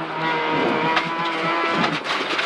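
Peugeot 206 RC Group N rally car's 2.0-litre four-cylinder engine, heard from inside the cabin, pulling at fairly steady revs, with a brief drop in pitch near the end.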